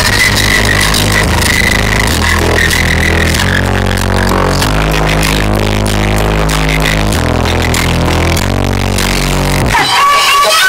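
Loud dance music with a strong bass line. The bass drops out just before the end.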